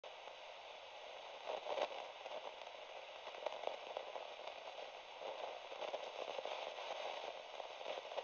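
Faint crackling static: a steady hiss with scattered soft clicks and crackles, a little louder about a second and a half in.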